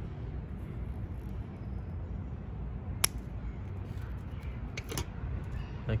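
Scissors snipping through a maple seedling's thick tap root: one sharp snip about three seconds in, with fainter clicks near five seconds, over a steady low background rumble.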